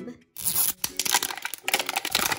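Plastic wrapping being torn off a toy surprise ball, a continuous crinkly tearing that starts about half a second in.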